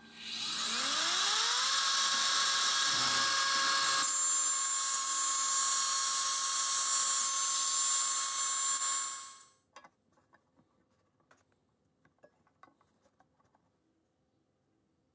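CNC router spindle spinning up with a rising whine over about a second and a half, then running steadily while milling plywood, with more hiss from about four seconds in. It cuts off suddenly near ten seconds, leaving only faint scattered clicks.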